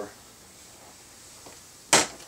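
A single sharp plastic click near the end, as a small screwdriver pries at the plastic trim cover behind a car's interior door handle to unclip it. Before it there is only faint room noise.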